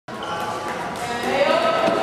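Several people talking indistinctly in a gymnasium, their voices echoing, with a few dull thuds.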